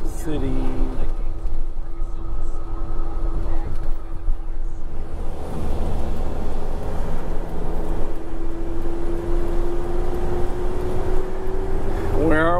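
Motorhome cabin noise while driving: a low road and engine rumble with a steady whine that rises slightly in pitch near the end.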